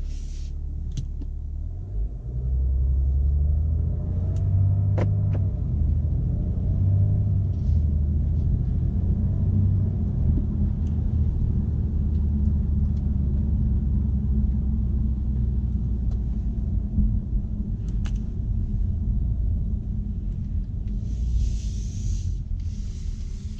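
BMW M550d's quad-turbo 3.0-litre straight-six diesel heard from inside the cabin. It gets louder as the car pulls away about two seconds in, then runs as a steady low rumble at modest revs.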